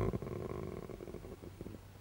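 A man's low, creaky drawn-out hesitation sound in a pause between words. It fades away into quiet room tone.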